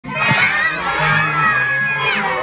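A crowd of children's voices shouting and singing together, many pitches held and overlapping, with a lower adult voice underneath.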